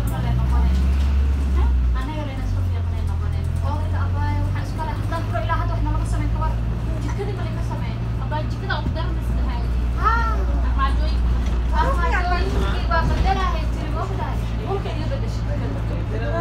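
A bus engine running with a steady low drone, heard from inside the passenger cabin, its pitch shifting about two seconds in, with passengers' voices talking over it.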